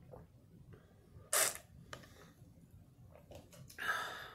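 A person drinking water through a straw from a plastic tumbler, with a short, loud, noisy burst about a second and a half in. Near the end come clicks and rustling as the handheld phone is moved.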